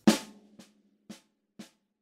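Snare drum played with sticks, four strokes about half a second apart, the first accented and much louder than the other three. This is the first group of a paradiddle, right-left-right-right, with the accent on the first right-hand stroke.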